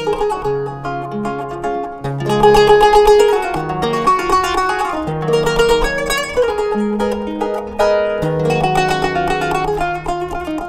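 Turkish kanun, a plucked trapezoid zither, playing a melody in quick runs of plucked notes over ringing low notes. It gets louder about two seconds in.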